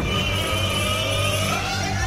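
A revving, engine-like sound in the overdubbed soundtrack, climbing steadily in pitch over a steady low hum.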